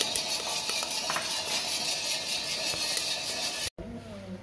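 Small electric drum coffee roaster running: beans tumbling and rattling in the rotating steel drum over a steady hiss while the roast is sampled with a spoon. The sound cuts off suddenly near the end.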